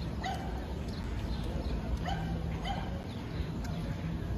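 A dog yipping in short, high calls, about five times, over steady street background noise.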